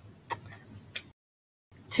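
Faint background hiss with two small clicks, about a third of a second and a second in, followed by a short stretch of dead silence where the audio drops out.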